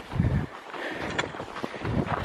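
Wind buffeting the microphone, with a low gust just after the start, then a steady rush of air and a single faint tick about a second in.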